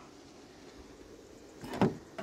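Faint steady background, then near the end one short, sharp clack: a pickup truck's door handle being pulled while the door is locked.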